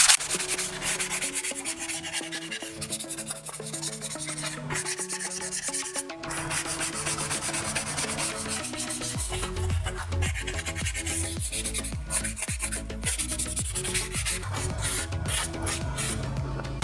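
Hand sanding of a bare natural-wood automotive trim panel with an abrasive sanding block: continuous back-and-forth rubbing strokes, scratchy and dry, as the stripped wood is prepared for primer. Background music plays underneath, with a bass line coming in about nine seconds in.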